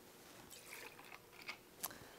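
Faint trickle of whiskey pouring from a bottle's metal pour spout into a copper jigger, followed by two light clicks in the second half.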